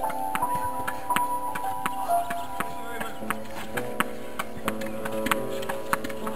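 A ball played fast against a practice wall with a table tennis bat: sharp, quick knocks of ball on bat and wall, about three to four a second, over background music with a slow melody.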